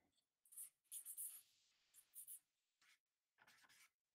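Faint scratching of someone writing or drawing on paper: about five short strokes, the longest about a second in.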